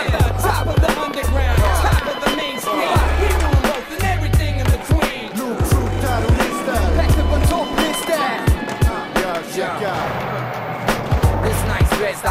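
Hip-hop music with a deep bass line of long repeating notes, mixed with skateboard sounds: wheels rolling and sharp clacks of the board.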